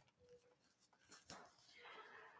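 Near silence: room tone with a few faint clicks and a brief faint tone.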